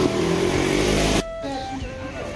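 Loud street traffic with a motorcycle engine running close by, cut off suddenly a little over a second in. After the cut, quieter background music with long held notes.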